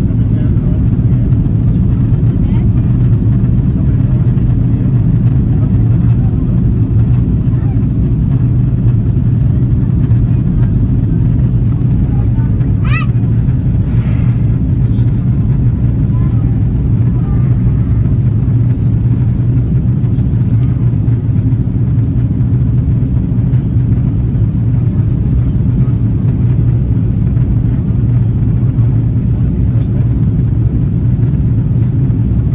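Steady cabin noise inside an Airbus A330 airliner on its descent: the low, even drone of the engines and the airflow past the fuselage, with a faint low hum under it.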